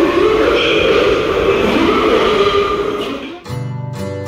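Background music over noisy metro platform ambience. About three and a half seconds in, the noise cuts out and clean acoustic guitar music plays.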